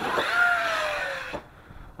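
Arrma Kraton 6S RC truck's brushless motor whining over hiss from its tyres and drivetrain on a part-throttle run. The whine falls slowly in pitch as the truck eases off, and the sound cuts off suddenly about a second and a half in.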